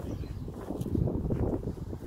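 Wind buffeting a phone's microphone outdoors: an uneven low rumble that rises and falls.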